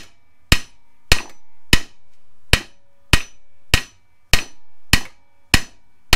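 Steel hammer blows, about ten strikes at a steady pace of just under two a second, each with a short metallic ring. The hammer is driving the old ball joint out of a Ford F-150 4x4 steering knuckle clamped in a bench vise, and the joint is moving.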